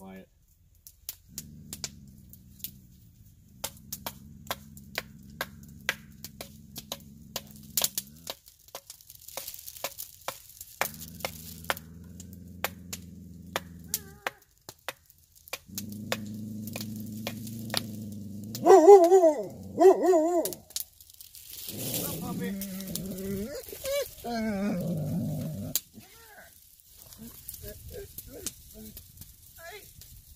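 A blade working a wooden stick, with many sharp clicks and scrapes. Stretches of a low steady hum run underneath. About nineteen seconds in comes the loudest sound, a wavering, howl-like call, followed by more pitched calls or voices.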